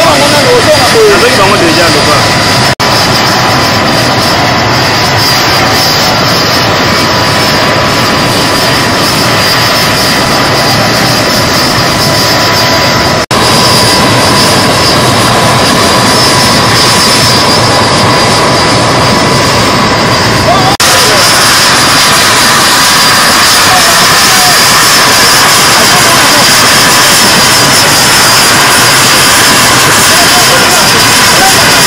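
Military transport helicopter's turbine engines running, loud and steady, a high whine over a constant roar. The sound drops out briefly three times.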